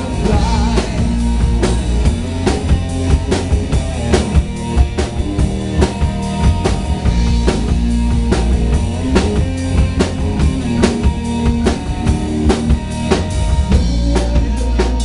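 Live rock band playing through a PA: electric guitar, electric bass and a drum kit, with the kick and snare loud and marking a steady beat over sustained bass and guitar notes.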